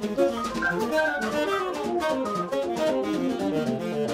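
A small jazz group rehearsing: fast runs of short notes on an organ over drums, with steady cymbal strokes.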